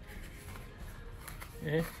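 Cardboard packaging handled and turned in the hands: quiet rustling with a couple of faint ticks, before a man says 'yeah' near the end.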